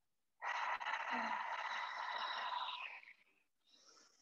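One long breath out, about two and a half seconds, heard as a steady breathy hiss with no voice in it.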